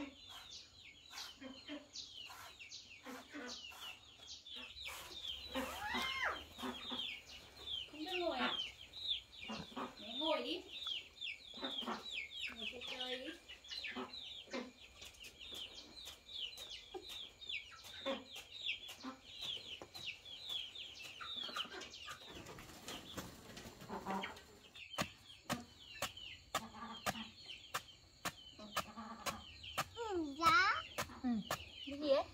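Chickens clucking over a constant high, rapid peeping chatter, with scattered sharp knocks.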